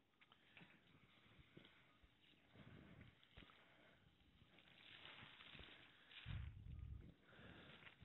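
Near silence: faint rustling and light handling noises with a few small clicks, and a brief low rumble about six seconds in.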